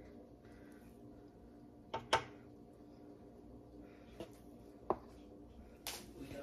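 A few quiet taps and clicks of a spoon against the batter bowl and griddle as small dots of pancake batter are spooned out, two close together about two seconds in, over a faint steady hum.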